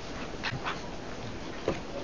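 Quiet room with small handling sounds from people writing and handling papers: two short squeaky scratches about half a second in and a single sharp tap near the end.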